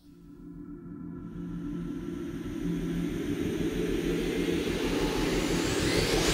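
A low rumbling sound effect with a held low hum, swelling steadily louder.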